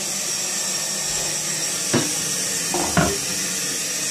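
A steady hiss, with two brief knocks about two and three seconds in.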